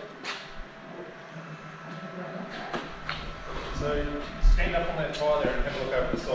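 Faint voices talking in the background of a workshop, with a few light knocks and a short low thump about four and a half seconds in.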